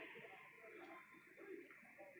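Near silence: faint outdoor background with a steady hiss and a few soft, low sounds, with no cannon fire.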